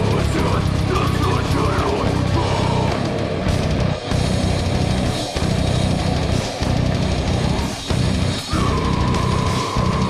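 Metal band playing live: distorted guitars, bass and drums in a stop-start riff broken by several short, sharp gaps, with a screamed vocal over the first two seconds or so. A steady high note holds through the last second and a half.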